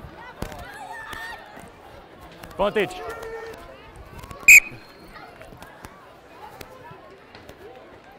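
A single short, sharp blast on a referee's whistle about halfway through, stopping play. Shouting voices from players and spectators sound around it, with one loud shout just before.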